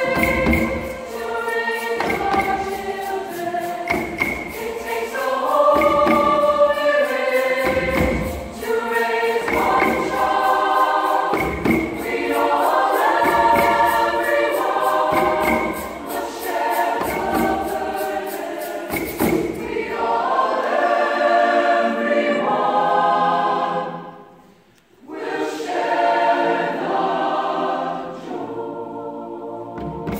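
Choir singing in parts, accompanied by hand drums struck on a slow, regular beat. About twenty seconds in the drums drop away; the singing stops briefly about twenty-five seconds in, then comes back more softly.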